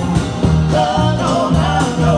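Live band music: a woman singing lead over electric guitar, acoustic guitar and a drum kit, with a steady beat.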